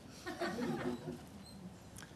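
Soft, brief laughter that dies away after about a second.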